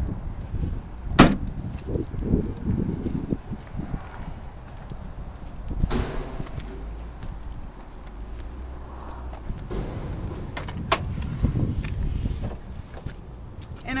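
The trunk lid of a 2007 Cadillac CTS slammed shut about a second in, the loudest sound here. After it come rumbling handling and wind noise and a couple of shorter clunks, the later ones near the end as the hood is released and raised.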